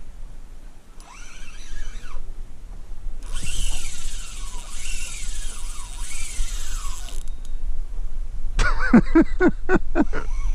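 Spinning reel's drag buzzing as a large pike pulls line off against it: a short run about a second in, then a longer run of about four seconds whose pitch keeps sweeping down as the fish surges.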